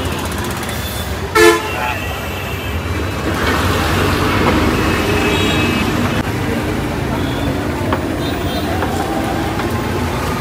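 Busy street traffic with a short, loud vehicle horn toot about a second and a half in, followed by the steady rumble of passing road vehicles.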